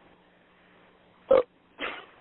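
Two short bursts of noise on a telephone conference line, about half a second apart, over a low steady hum. The first is sharp and loud, the second weaker.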